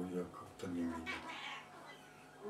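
A person's voice making a couple of short, drawn-out sounds, quieter than the talk around it, then fading out in the second half.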